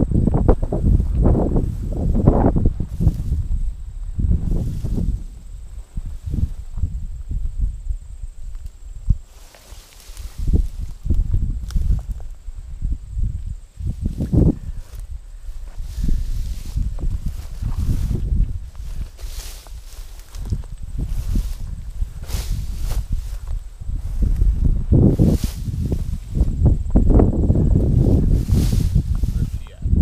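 Footsteps wading through tall dry grass, the stalks swishing against legs, in irregular strokes over a heavy low rumble on the microphone.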